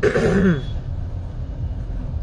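A woman clears her throat once, briefly, at the very start, over the steady low rumble of a car cabin.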